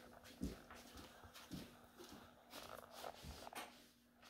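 Faint, soft footsteps on an indoor floor, a few separate steps in near silence.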